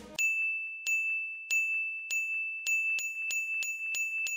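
Electronic counter sound effect: a steady high beep under about a dozen chime-like pings that come faster and faster, ticking up a tally.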